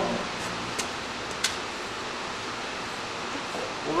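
Steady background hiss, with two faint, brief clicks about a second and a second and a half in.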